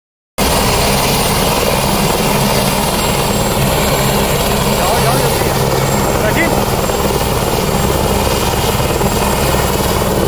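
Light helicopter running on the ground with its rotors turning: a loud, steady rotor and turbine noise that does not rise or fall. The sound cuts out briefly right at the start.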